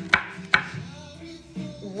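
Kitchen knife chopping red chilli on a wooden chopping board: two sharp strokes in the first half second, then quieter, over background music.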